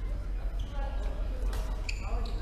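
Badminton rally in a large sports hall: sharp racket strikes on the shuttlecock, the clearest with a short ringing ping near the end, over people's voices and a steady low hum.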